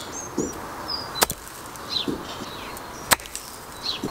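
Two sharp clicks of a golf club striking golf balls on artificial turf, about two seconds apart, over a few faint bird chirps.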